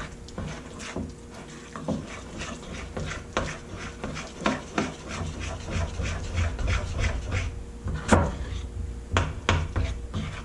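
A spoon stirring and scraping a thick powdered-sugar glaze against the sides of a ceramic bowl, in quick, irregular strokes with occasional clinks. The loudest clink comes about eight seconds in. The glaze is still too stiff.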